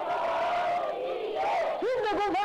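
A congregation shouting a devotional 'ki jai' acclamation in unison, many voices held in one long cry. Near the end, a single strong voice starts a new rising-and-falling call.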